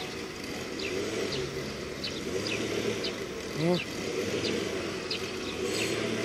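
A small bird repeating short, high, falling chirps about once or twice a second over a steady low rumble of outdoor background noise. A brief voice-like call sounds about two-thirds of the way in.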